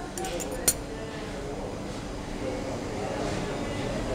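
A metal fork clinking against a ceramic plate: a few light clicks in the first second, with one sharp clink, then low restaurant room noise.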